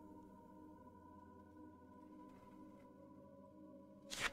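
Near silence under a faint, steady drone of several held tones that stays unchanged throughout.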